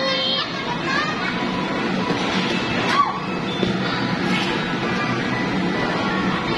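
Indoor playground din: children's voices and short cries over steady background music and general noise.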